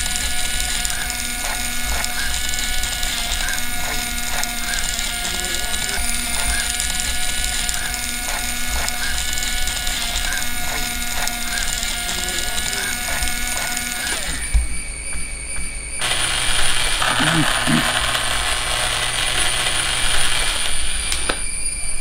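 A small yellow DC gear motor running steadily, turning a metal spoon round in a paper cup of coffee to stir it, heard along with background music. The sound changes about two-thirds of the way through.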